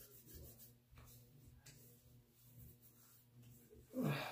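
Faint rubbing of hands spreading witch hazel astringent over the face and neck.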